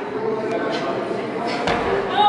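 A single thud about one and a half seconds in: an athlete's feet landing on the gym floor after dropping down from a pull-up bar.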